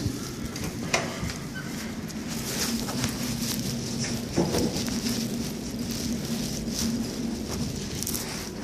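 Handling noise from a camera held low against clothing: a steady rustling, crackling rub of fabric on the microphone with scattered small clicks, over a low steady hum.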